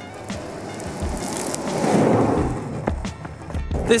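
Penny board's small plastic-board wheels rolling over rough asphalt, the rumble swelling as it passes close by about two seconds in and fading after. Background music with a steady beat plays throughout.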